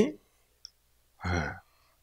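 Speech only: a man's voice trails off a word at the start, then says a short "ye" (yes) just over a second in, with a faint click between.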